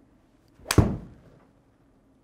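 Golf iron striking a ball off a hitting mat: one sharp crack about three-quarters of a second in, with a brief fading tail.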